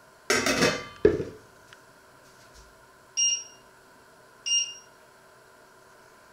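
Stainless steel lid set down on a steel cooking pot: a ringing metal clatter followed by a second knock. Then two short electronic beeps a little over a second apart from the glass-ceramic hob's touch controls as the heat is set.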